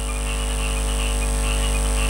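Steady electrical hum from the public-address sound system, a low buzz with many overtones that holds one pitch and slowly grows louder through the pause in speech.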